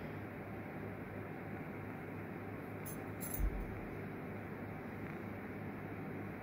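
Quiet handling of a metal sand-casting flask and tools over a steady faint hiss and low hum, with a brief light clink and a soft knock about three seconds in.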